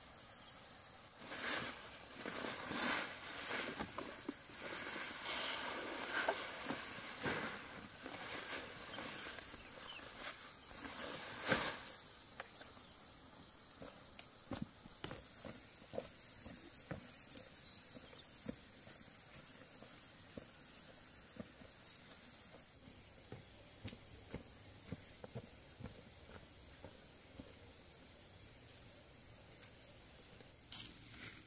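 Insects buzzing steadily in a high, pulsing drone, part of which stops about three-quarters of the way through. Over it come footsteps crunching on dry stalks and leaves, busiest in the first half, with one sharp crack near the middle.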